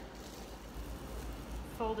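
Faint rustle of decoupage tissue paper being pressed and smoothed by hand onto a wooden tabletop, over a low steady hum.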